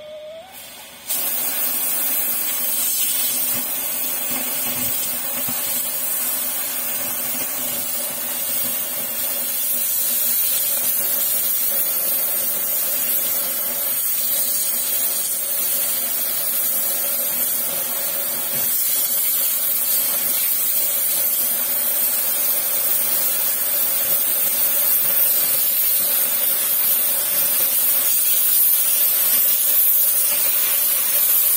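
Victor oxy-fuel cutting torch hissing steadily as it cuts through 30 mm Hardox steel plate. The hiss comes in suddenly about a second in and grows slightly louder toward the end.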